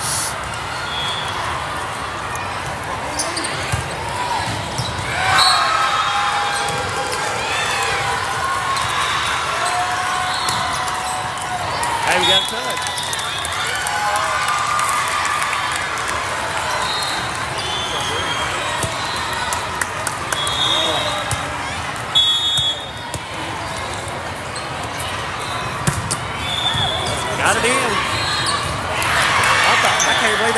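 Din of a busy volleyball hall: players and spectators calling out across several courts, volleyballs being hit and bouncing, with short high shoe squeaks on the court floor, all echoing in the big hall.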